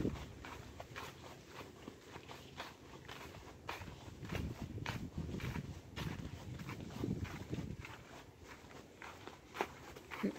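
A horse walking through dry fallen leaves: its hooves crunch and rustle the leaves with each step, about two steps a second, with soft low thuds underneath.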